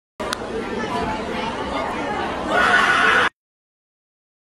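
Indoor chatter of several voices with a single sharp knock just after it starts. About two and a half seconds in, a louder, high-pitched shout or cheer breaks out, and it cuts off abruptly.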